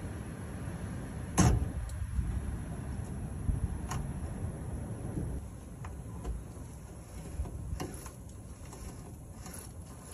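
A 1966 International 1200A's clutch slave cylinder and linkage being worked as the seized slave cylinder frees up. A sharp knock about a second and a half in, then scattered light clicks over a low rumble.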